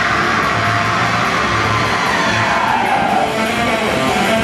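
Black metal band playing live at full volume: distorted electric guitars, bass and drums in a dense, unbroken wall of sound, heard from within the crowd.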